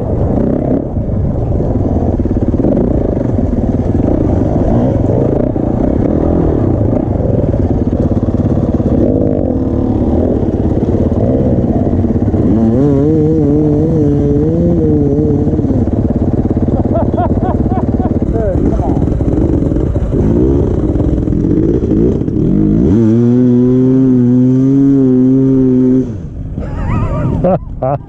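Dirt bike engine running while riding a rough grassy trail, then idling with a steady hum after the bike stops; the sound drops away briefly near the end.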